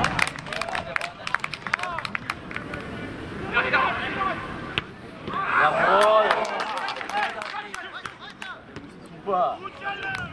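Men's voices shouting on a football pitch in short bursts, loudest about five and a half to six and a half seconds in, with a scatter of sharp clicks in the first few seconds.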